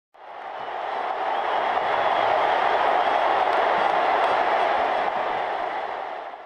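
Stadium crowd noise: the steady, dense roar of a large football crowd, fading in over the first second.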